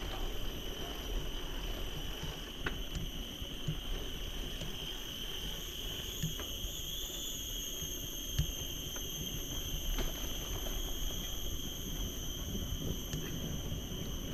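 A steady high-pitched drone of forest insects, over a low rumble of wind and bicycle tyres on asphalt, with a few faint clicks from the moving bike.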